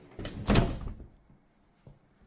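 A door being pushed shut, landing as one sharp knock about half a second in, with a short tail after it.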